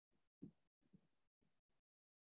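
Near silence, broken by about five brief, faint low bumps. The clearest come about half a second and a second in.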